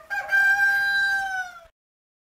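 A rooster crowing once: a short lead-in note, then one long held note of about a second and a half that drops slightly as it ends.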